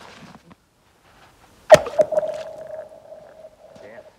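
A thrown chunk hits the thin ice of a frozen lake with a sharp smack about two seconds in, then a smaller second hit. The ice rings on with a steady, eerie tone that fades over about two seconds.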